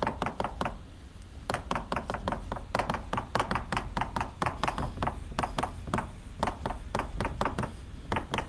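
Chalk writing on a blackboard: a quick, irregular run of sharp taps, several a second, with a short lull about a second in.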